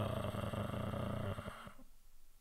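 A man's drawn-out hesitation sound trailing off into a low creaky rasp of vocal fry. It fades out about a second and a half in, leaving faint room tone.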